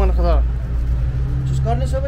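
Low steady rumble and hum of a motor vehicle's engine running, with brief men's voices at the start and near the end.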